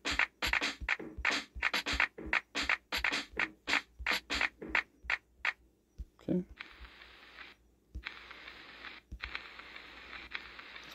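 A drum-pad app's 'Boom Bap Classic' drum sample repeating fast at about four hits a second at maximum tempo, stopping about five and a half seconds in. A steady hiss follows, broken twice by short gaps.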